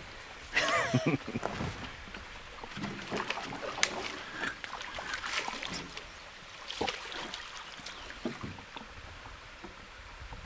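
A man laughs briefly about a second in. After that come faint, scattered knocks and clicks with light water noise from a small jon boat as a fish is played on rod and reel.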